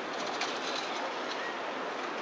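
Steady city street noise from traffic at a road junction, with a few faint, short high chirps over it.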